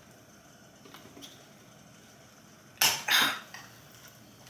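A pull-tab drink can of carbonated spiked lemonade snapped open near the end: a sharp click of the tab, then a short fizzing hiss. Before it come a couple of faint ticks.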